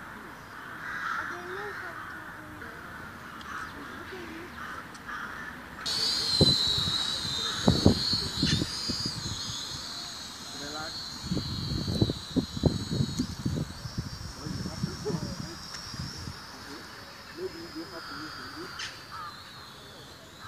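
Small quadcopter drone's motors starting up about six seconds in with a high, wavering whine that steps up in pitch partway through and drops back near the end. Low rumbling buffets on the microphone come and go under it.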